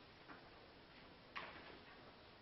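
Near silence: room tone with two faint short clicks, the clearer one a little past halfway.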